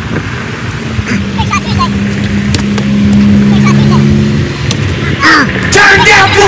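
Roadside traffic: a car engine drone that holds steady for about four seconds and then fades. Voices are heard around it, growing louder near the end.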